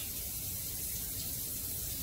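Faucet running steadily, a thin stream of tap water falling into a stainless steel sink.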